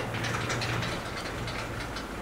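Felt blackboard eraser rubbing across a chalkboard in quick repeated strokes.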